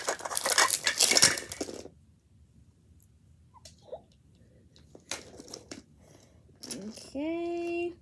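Plastic wrapping on a Mini Brands capsule being peeled and crinkled by hand, loud and crackly for about two seconds, with a brief rustle again about five seconds in. Near the end a voice holds a short, steady note.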